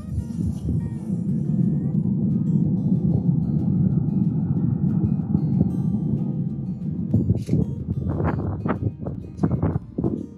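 Wind buffeting the microphone with a steady low rumble. Near the end come several short knocks from the smoker's racks or door being handled.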